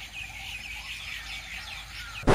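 Small birds chirping: a quick, continuous run of short high chirps.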